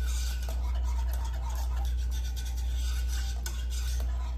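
Wire whisk stirring heavy-cream sauce in a pot, its wires scraping and ticking irregularly against the pan, over a steady low hum.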